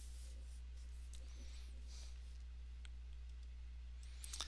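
Faint scratching and two light ticks of a stylus writing on a tablet, over a steady low electrical hum.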